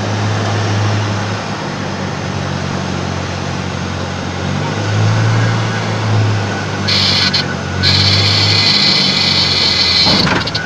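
Single-engine propeller aircraft heard from inside the cabin during its landing on an unpaved dirt runway: a steady engine and propeller drone with a low hum that swells and fades. About seven seconds in, a loud hissing noise joins in as the plane rolls over the rough strip.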